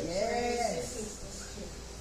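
A single voice holding one drawn-out note that rises and falls in pitch for under a second, then fading to the hum of the room.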